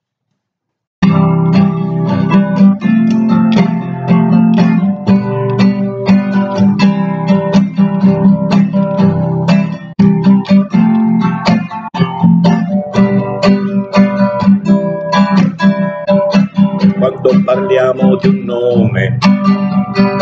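Acoustic guitar strummed steadily, an instrumental introduction before a song begins. It starts about a second in, after a brief dead silence.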